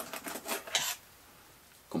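A few short rustles and clicks in the first second as a foam filter block, a mesh bag of bio gravel and plastic hang-on-back filter parts are handled and picked up off a table.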